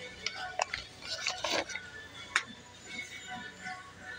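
Light clicks and a short crinkling rustle from a plastic refill pouch being handled, mostly in the first couple of seconds, over faint background music.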